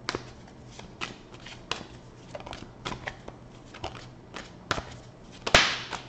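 A tarot deck being shuffled by hand: a steady run of light card clicks and rustles, then a louder snap and a brief swish of cards about five and a half seconds in.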